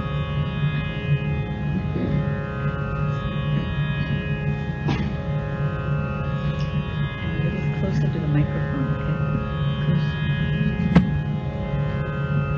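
Steady Indian classical-style drone music, with plucked-string overtones sustaining and fading over one held pitch. A sharp click about eleven seconds in.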